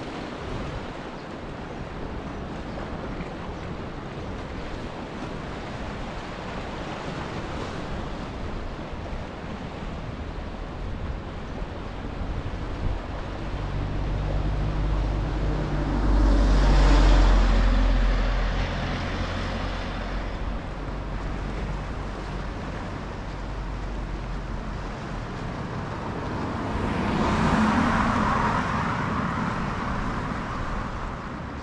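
Sea waves wash against a rocky shore, with wind on the microphone. About halfway through, a vehicle passes with a deep engine rumble, and a car passes near the end with a rising and falling rush of tyre noise.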